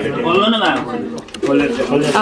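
Indistinct voices of several people talking over one another, with one drawn-out exclamation rising and falling in pitch about half a second in.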